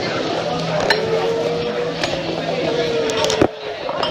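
Restaurant dining-room din: many overlapping voices chattering, with a few sharp clinks of dishes and cutlery.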